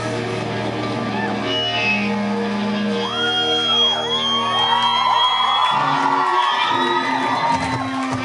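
Live rock band holding long, ringing chords with few drum hits, while the crowd whoops and shouts over it from about three seconds in.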